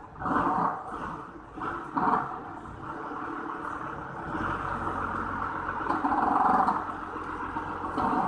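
Forklift engine running as it drives a heavy steel plate onto a truck bed, with a couple of louder surges in the first two seconds. It revs up from about halfway through and is loudest about six seconds in.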